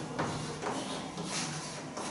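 Chalk scratching and tapping on a chalkboard as a formula is written, in short, irregular strokes.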